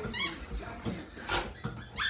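A young dog gives a short, high-pitched cry at the start, followed a little past the middle by a louder, harsher, noisy burst.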